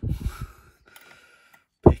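Steel dimple pick scraping and rattling as it is drawn out of a Mul-T-Lock cylinder's keyway, with hands handling the lock in its vice; the noise is loudest in the first half-second and then dies away.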